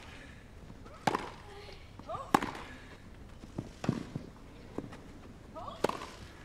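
Tennis rally on grass: rackets striking the ball back and forth, a sharp crack about every one and a quarter seconds, with softer ball bounces between. A player's short grunt goes with some of the strokes.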